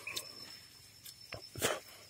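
Chewing a bite of Baccaurea fruit rind: several short mouth clicks and smacks, the loudest about a second and a half in.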